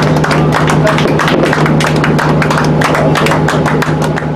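Firework crackle stars bursting: a dense run of rapid crackles and pops over a steady low hum.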